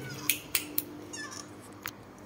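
A few short, sharp clicks and light taps, four of them spread across two seconds with the last near the end, over a faint low hum.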